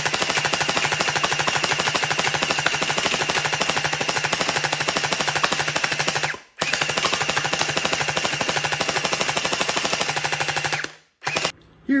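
Toy gel blaster firing full-auto in two long bursts: a rapid, even stream of shots over a steady motor whir. There is a brief break about six and a half seconds in, and the firing stops about a second before the end.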